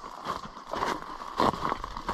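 Footsteps crunching on dry leaf litter and loose stones, several uneven steps about half a second apart.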